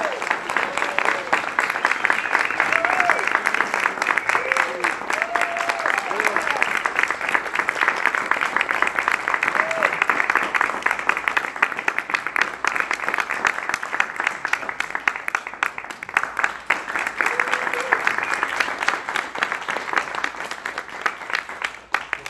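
Audience applauding steadily, with scattered short whoops and cheers over the clapping.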